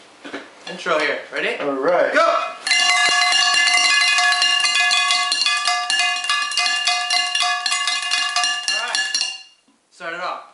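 Drumsticks beating a fast roll on upturned cooking pots, the metal ringing with steady tones under the rapid strikes. It starts about two and a half seconds in and stops suddenly about a second before the end.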